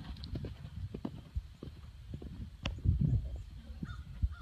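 Hoofbeats of a ridden horse cantering over a grass and sand arena, with a louder thump about three seconds in.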